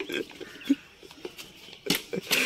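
A few short, low vocal noises from the players, and a sharp click or knock near the end.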